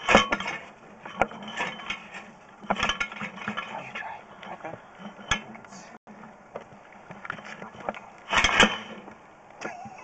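Irregular clicks, knocks and scraping as a sewer inspection camera's push cable is pushed in and pulled back in a pipe, with a louder cluster of knocks near the end.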